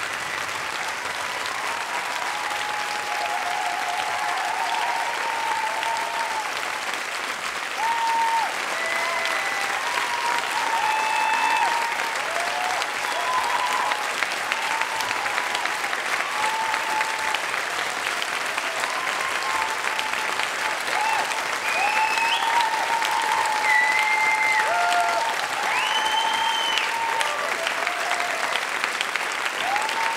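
Theatre audience applauding steadily, with scattered whoops and cheers rising over the clapping.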